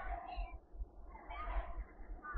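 Market-Frankford Line subway car running, a steady low rumble, with two short higher-pitched wavering sounds above it, about half a second in and again around a second and a half.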